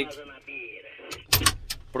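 Steady low hum inside a combine harvester's cab, with a few sharp clicks and knocks about a second and a half in.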